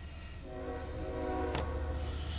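Freight locomotive air horn, the chord of several held notes coming in about half a second in and sounding steadily from a distance, over a low steady hum; a sharp click about a second and a half in.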